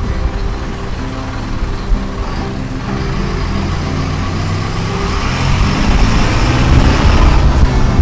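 A large road vehicle passes on the street. Its engine and road noise build over the second half and are loudest near the end, where they break off suddenly.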